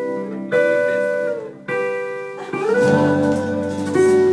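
Live guitar music: ringing chords are struck about half a second in and again just before the middle, then the notes slide upward and are held.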